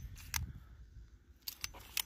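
Slide of a Tisas 1911A1 .45 ACP pistol being worked by hand, giving a few sharp metal clicks as it runs back and snaps forward: one at the start, one about a third of a second in, and a cluster near the end. There is no grinding between the clicks, fitting a slide that is smooth, "like it's riding on glass."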